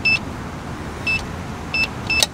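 Electronic keypad on a geocache lock box beeping as code keys are pressed: three short, high beeps, the first two about a second apart and the third quicker.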